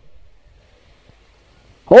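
Quiet pause in a male commentator's Hindi commentary, with only a faint low background rumble. His voice starts again just before the end.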